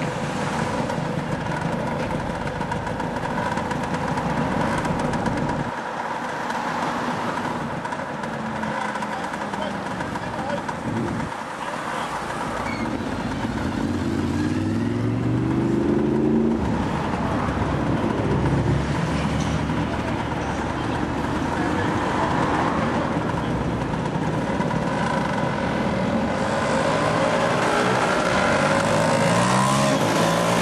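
Motor scooter engine running under way, its pitch rising as it accelerates about halfway through and again near the end, over a steady rush of wind and road noise.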